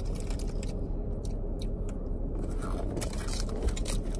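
Low steady rumble of a car cabin, with faint crunching of a crispy snack and scraping and rustling of snack packaging.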